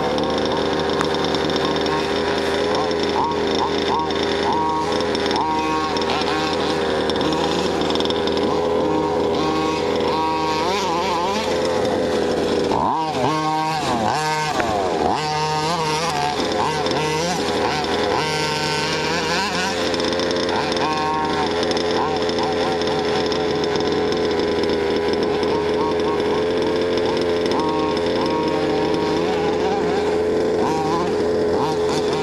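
The petrol two-stroke engine of a 1/5-scale RC car running, its pitch rising and falling with the throttle. About a third of the way in comes a stretch of quicker swings, where it is blipped and revved through the turns.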